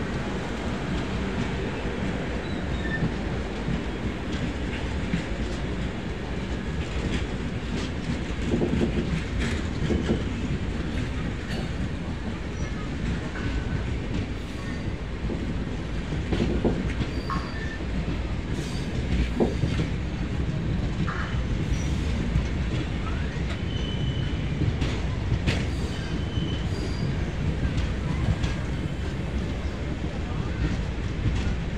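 Passenger coaches of an express mail train rolling past on the track: a steady low rumble of wheels on rails with irregular clicks over the rail joints and a few brief high-pitched squeaks from the wheels.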